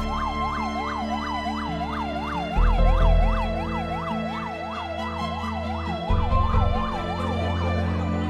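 Ambulance siren in a fast yelp, its pitch rising and falling about three times a second, dying away near the end. Background music with low held notes plays under it.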